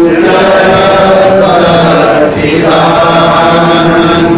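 Devotional mantra chanting by voice, drawn out in long held notes.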